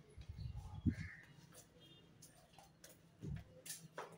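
Soft footsteps and camera-handling thumps while walking through rooms: a cluster in the first second and one more about three seconds in, with a faint brief call in the background.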